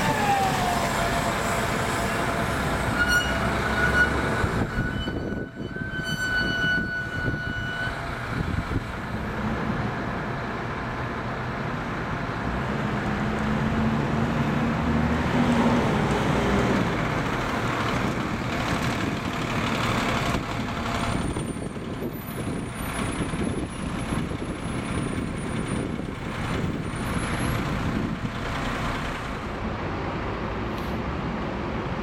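Diesel buses moving off at close range. A double-decker's drive whine falls in pitch at the start, with steady whines a few seconds later. Then a single-decker's engine rises and falls in pitch as it pulls round, over continuous traffic noise.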